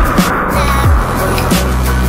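Background music with a steady beat and deep falling bass notes, over a hiss of noise that fades during the first second and a half.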